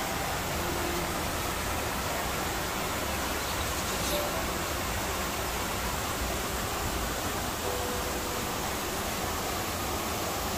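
Steady, even rush of running water, with a few faint short tones in the background.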